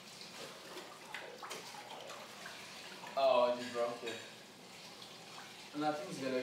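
Pool water lapping and sloshing around people standing in a small indoor pool, with a short burst of a man's voice about three seconds in.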